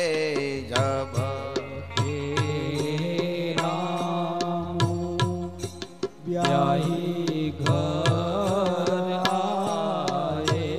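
Devotional Indian singing: a voice sings a melodic, ornamented line over sustained accompanying tones and regular hand-drum strokes. The voice thins out briefly about six seconds in, while the accompaniment carries on.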